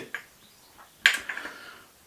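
A short, sharp breath out about a second in, fading quickly, between otherwise quiet moments in a small room.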